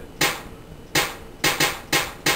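A layered drum hit made of two clap samples and a snare sample sounding together from Reason's ReDrum drum machine, triggered about five times at uneven intervals with several hits near the end.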